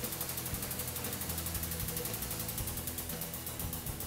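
Hydraulic press running with a steady low hum and a fast, even pulsing as its ram slowly compresses a steel pipe.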